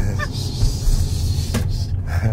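Road and tyre noise inside the cabin of a Tesla Model X P100D as it slows hard after a full-power launch: a steady low rumble with a hiss over it and no engine sound, with a brief vocal outburst near the end.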